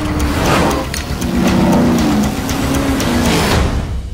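A car engine revving loudly over music, its pitch rising and falling in the middle.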